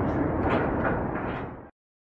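Outdoor rumbling background noise with a few sharp knocks, fading out and then cutting to silence near the end.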